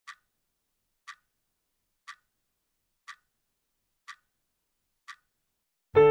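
Clock ticking once a second, six clean ticks with dead silence between them. Piano music begins right at the end.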